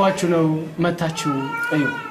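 A man speaking, with some drawn-out, sung-like syllables.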